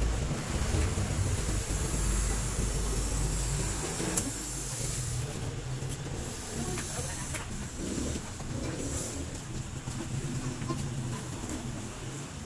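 Outdoor background noise: a low rumble, heaviest in the first four seconds and easing after, under a steady hiss.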